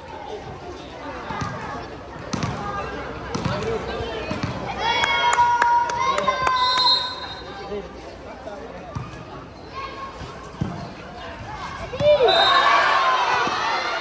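Volleyball game: sharp thuds of the ball being struck and landing several times, over children's voices calling and shouting. A louder burst of shouting comes about two seconds before the end.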